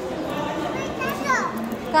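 Background chatter of voices with a child's high-pitched calls, two of them sliding down in pitch, the louder one at the very end.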